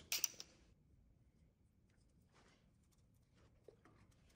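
Near quiet with a single short click just after the start, then faint, scattered rustles and taps from a gloved hand handling black ABS drain pipe fittings.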